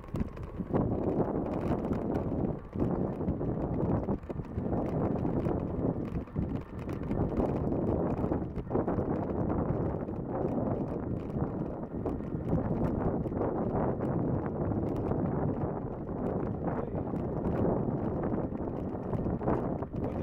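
Wind buffeting the microphone during a bicycle ride on an asphalt path, with steady rolling noise and frequent small rattles and clicks from the bike.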